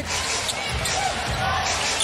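A basketball being dribbled on a hardwood court, a run of low bounces about two to three a second, over steady arena crowd noise.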